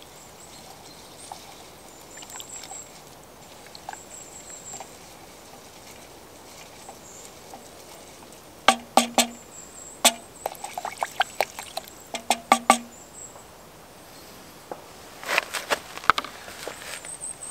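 Wooden spoon stirring soup in an aluminium mess-kit pot, knocking and scraping against the metal in two short clusters of clicks, some with a brief ring from the pot.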